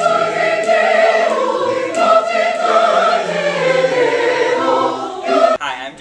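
Large mixed choir of men and women singing a slow passage of held notes, loud and full, breaking off suddenly near the end.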